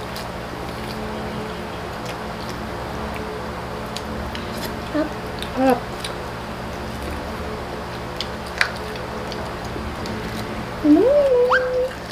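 Soft background music with steady sustained tones under faint eating sounds, with a few small clicks from handling food. Near the end a brief voice-like hum rises in pitch and then holds for under a second.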